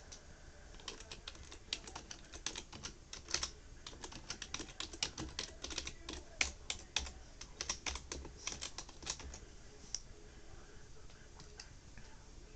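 Typing on a computer keyboard: a quick, irregular run of key clicks starting about a second in and stopping about ten seconds in.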